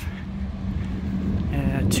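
A steady low mechanical hum, like a motor running somewhere near, with a spoken word starting near the end.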